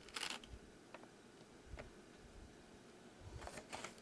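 Faint handling noises of a toy truck trailer being picked up and turned over by hand: a short rustle at the start, a few light clicks, and two brief rustles near the end.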